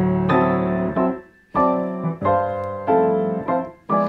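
Grand piano played in block-chord style, the melody on top with the chord notes packed beneath it and the sustain pedal down. About seven chords are struck one after another, each left ringing, with a brief pause a little after a second in.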